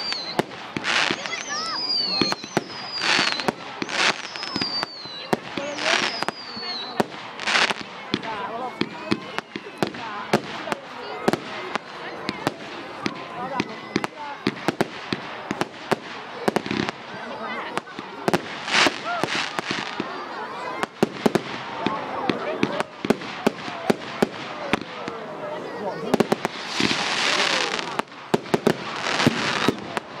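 Fireworks display: aerial shells bursting in a long run of sharp bangs. Falling whistling tones sound over the first several seconds, and near the end come a couple of longer hissing, crackling bursts.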